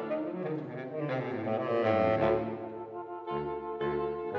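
Saxophone quartet of soprano, alto, tenor and baritone saxophones playing sustained chords together, swelling to a peak about two seconds in, then easing off as a low baritone note comes in near the end.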